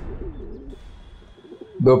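A pigeon cooing in short, low, wavering phrases, over a low rumble that cuts off just past the middle. A man's narrating voice comes in at the very end.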